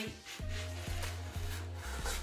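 A ruler scraping shaving foam off paper in a soft rubbing, over background music with steady sustained bass notes.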